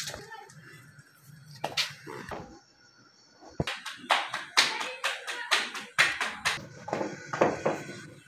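Hands slapping a ball of roti dough flat between the palms: a quick run of soft slaps that starts about halfway through.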